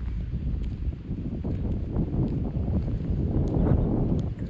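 Wind buffeting a phone microphone: an irregular low rumble, loudest shortly before the end.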